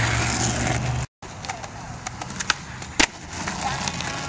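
Skateboard wheels rolling over concrete, a loud steady rumble that cuts off about a second in. Quieter rolling follows, with scattered clicks of the board and one sharp clack about three seconds in.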